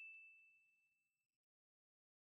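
A single high-pitched notification-bell ding sound effect, ringing out and fading away within about the first second.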